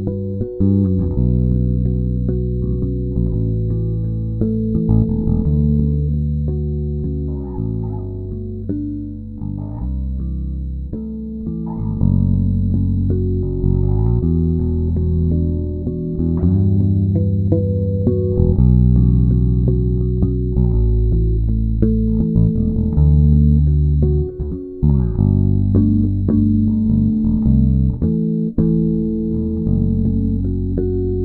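Fretted electric bass guitar played fingerstyle as a solo piece, with low notes and chords held and ringing together, changing every second or two.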